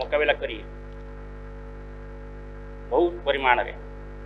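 Steady electrical mains hum, a low buzz with several even tones, running under a man's speech through podium microphones; he speaks right at the start and again about three seconds in, with only the hum between.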